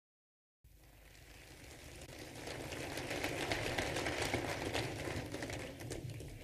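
Audience applause fading in after a moment of silence, swelling to a peak midway and then dying down, over a low hum.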